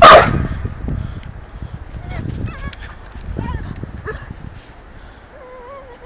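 A pit bull–type dog gives one loud bark at the start, then several short, high, wavering whines, the longest near the end, over rustling in dry grass.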